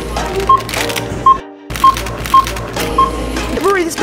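Self-checkout barcode scanner beeping as items are passed over it: short single beeps about half a second apart, some five or six in all, over background music. The sound drops out briefly about a second and a half in.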